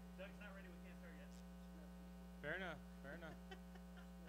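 Steady electrical mains hum, with faint, brief voices of people talking in the room, the loudest a little past halfway.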